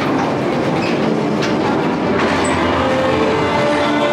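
Geisterrikscha ride cars rolling and clattering along their track, a steady running clatter with a couple of sharp clicks partway through.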